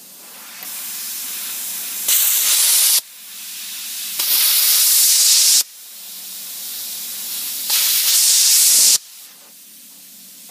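A CT520D plasma cutter's torch cutting thin sheet steel, giving a loud hiss of arc and compressed air. It comes in three bursts, each swelling, then jumping louder, then stopping suddenly as the trigger is let go.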